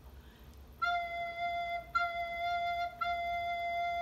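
Soprano recorder playing the note F three times, each note held about a second and all at the same pitch, played as a review of the F fingering.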